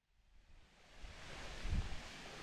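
Silence, then woodland ambience fading in about a second in: a soft steady hiss with low rumbles of wind on the microphone.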